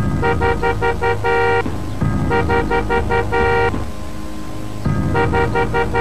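A two-tone car horn tooted in a rhythmic pattern, about five short beeps and then a longer one, repeated three times over the low rumble of the car.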